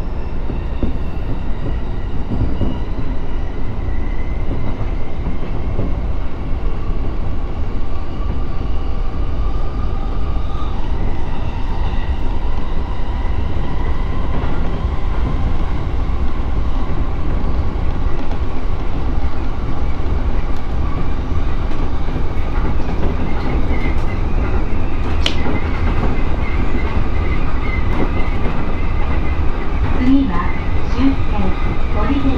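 Running noise of a JR East E231 series electric commuter train at speed, heard from inside: a steady loud rumble of wheels on rail with a faint steady whine over it. Near the end comes one brief high-pitched squeak.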